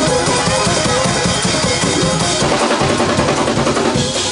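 Church band playing a praise break, a driving gospel groove with the drum kit loudest, bass drum and snare hammering under held keyboard tones.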